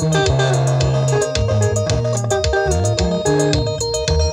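A live band of two electric guitars and a bass guitar playing an instrumental passage through PA speakers, with a steady beat and the bass holding long low notes.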